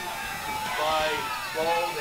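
Faint, distant voices over a low background haze, with no close commentary.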